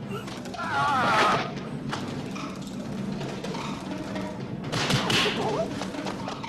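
A martial artist's high-pitched, wavering fighting yell about a second in, then sharp sound-effect thuds of landed blows near two seconds and near five seconds, with a shorter cry after them, over steady background music.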